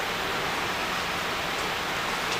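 Steady, even hiss of background room noise, with no distinct sound event.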